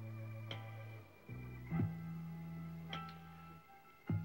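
A vinyl record playing on a turntable: a passage of music with held bass notes and sharply plucked higher notes, with a short dip in level about a second in and again near the end.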